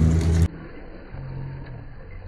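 A loud, steady low hum that cuts off suddenly half a second in, followed by a much quieter, faint background hum.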